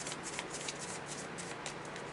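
A large tarot deck being shuffled overhand, cards sliding and tapping against each other in soft, irregular clicks.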